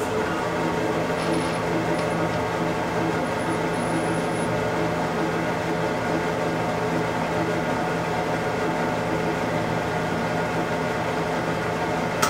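Instron universal testing machine's crosshead drive running steadily as it pulls a yarn specimen in tension, a steady mechanical hum made of several fixed tones.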